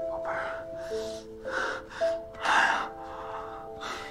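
Several short, breathy sobbing gasps from a young girl being held and comforted after crying, the loudest about two and a half seconds in, over soft background music with long held notes.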